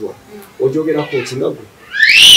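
Brief speech, then right at the end a loud, shrill wailing cry begins, rising in pitch.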